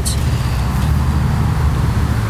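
Steady low background rumble, with a soft rustle of leaves and stems being handled.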